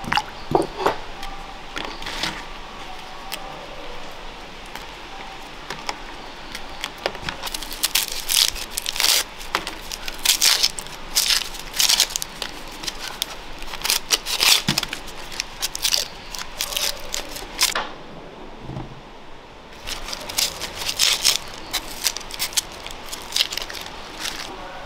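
Dry red-onion skins crackling and tearing as a small knife peels them, in quick clusters of crisp crackles with a short lull partway through. At the very start, tomatoes splash into a clay bowl of water.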